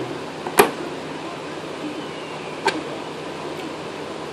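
Two sharp clicks of small metal parts being handled (an air hose reel's inlet fitting and a pair of snap ring pliers), the louder one about half a second in and the other past the middle, over a steady low hum.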